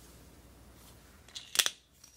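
Quiet room tone, then a quick cluster of sharp clicks about one and a half seconds in.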